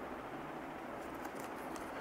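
Quiet room tone: a steady faint hiss with a low hum, and a few faint light rustles or clicks about halfway through as a cardboard product box is handled.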